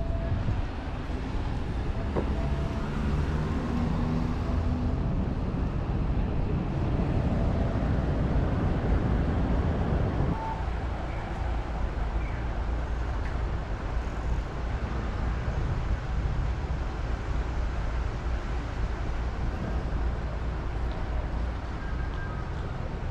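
Road traffic at a city intersection: vehicles running past in a steady rumble, which eases suddenly about ten seconds in.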